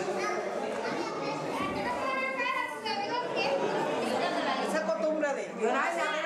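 Several women and young children chattering at once, overlapping voices with some high children's calls, in a room with some echo.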